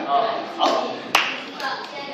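Voices talking over scattered hand claps, with one sharp click about a second in.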